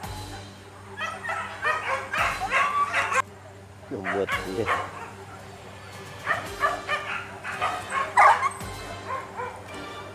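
Hunting dogs yelping and barking in quick excited bursts, in two runs of a couple of seconds each, with a falling whine between them.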